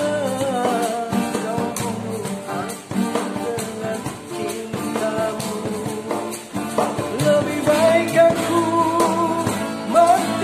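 A man singing a dangdut song over backing music with a steady beat.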